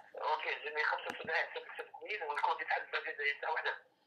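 A voice talking over a phone line, the person at the other end of the call replying, thin and tinny with no low end.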